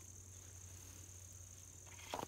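Faint, steady high-pitched insect song, with little else to be heard.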